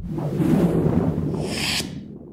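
Whoosh sound effect from an animated logo outro: a rushing noise that swells, takes on a bright hiss in its last half second, and cuts off sharply just before the end.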